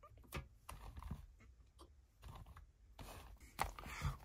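Faint scattered clicks and taps of a hand handling a battery-operated plush toy rabbit, with no motor sound: the toy is not moving, which the owner puts down to dead batteries.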